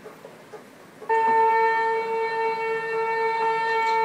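A film soundtrack played on a TV holds one steady high tone with overtones. The tone starts abruptly about a second in, after a quiet moment, and does not waver.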